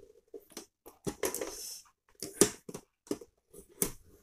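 Hands peeling packing tape off the plastic body of a new HP LaserJet P1108 printer: a short tearing rustle about a second in, among a few sharp plastic clicks and knocks from handling the printer's panels.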